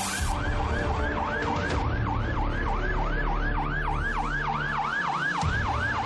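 Emergency vehicle siren in a fast yelp, its pitch rising and falling about four times a second, over a low vehicle rumble.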